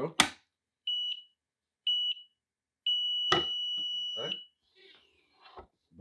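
Clamshell heat press clamped shut with a loud clack, then its timer beeping at a steady high pitch: two short beeps about a second apart and a longer beep of about a second and a half, marking the end of a brief pre-press. A sharp clunk from the press comes during the long beep.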